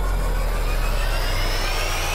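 Logo-intro sound effect: a rushing whoosh over a deep rumble, with tones climbing steadily in pitch like a riser.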